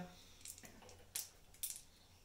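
Three faint, short clicks of small plastic gaming pieces being handled on the tabletop.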